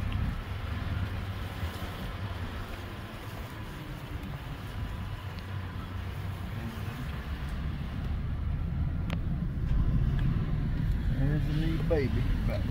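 Wind rumbling and buffeting on a phone's microphone outdoors, a steady low rumble that grows a little louder toward the end. A person's voice comes in near the end.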